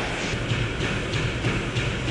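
Gym cardio machine running with a steady rumble and a faint regular beat about twice a second.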